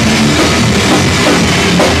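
Live rock band playing loud and without a break: electric guitars over a driving drum kit with cymbals.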